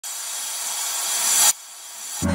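A whoosh intro effect: a hissing swell that grows louder for about a second and a half, then cuts off suddenly and leaves a fainter hiss.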